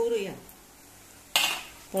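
A metal spatula scraping and clattering in a pan of clams in their shells: a sudden loud clatter about a second and a half in that fades within half a second.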